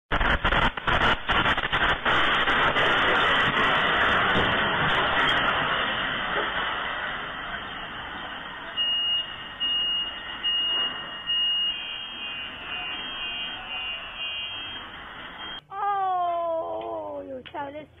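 Earthquake shaking heard on a CCTV microphone: a loud rumble with rapid rattling knocks that fades away over several seconds. A car alarm then beeps in a repeating on-off pattern, set off by the quake. A voice comes in after a cut near the end.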